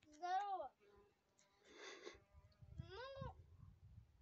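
A child's voice making two short drawn-out calls, each rising and then falling in pitch, with a breathy rush between them and a low wind rumble on the microphone.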